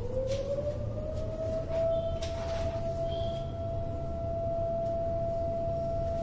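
A single whining tone that climbs in pitch over the first second or so, then holds one steady pitch. A few faint rustles come about two seconds in.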